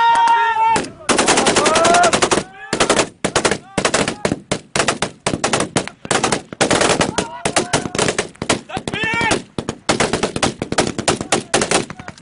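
Automatic gunfire in long, rapid bursts broken by short pauses, with a man's held shout at the very start and brief shouts between the bursts.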